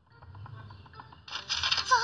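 Cartoon soundtrack: a quiet stretch with faint background sound, then a character's voice begins speaking near the end.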